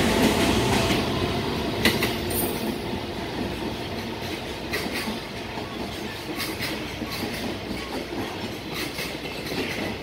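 Freight train container wagons rolling past at speed, their wheels clacking over the rail joints again and again over a steady rumble that eases off after the first couple of seconds.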